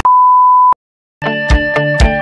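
A single steady high electronic beep lasting about two-thirds of a second and ending in a click. After a brief silence, background music with a regular beat starts up a little past a second in.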